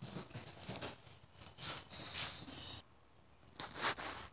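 Metal wheel hub bearing assembly being slid onto a splined axle shaft: light scraping and clicks of metal on metal, with a brief squeak about two seconds in and a sharper click near the end.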